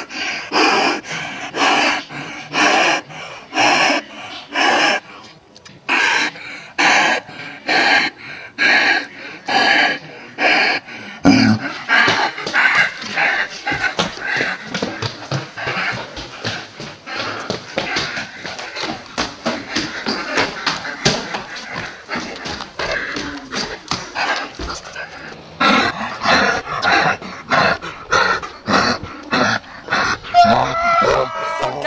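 Repeated animal calls, about two a second, with a denser, quicker run of calls through the middle stretch.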